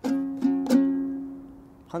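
A dombra, the two-stringed long-necked lute of the Uzbek bakhshi, strummed three times within the first second, the chord then ringing on and fading away.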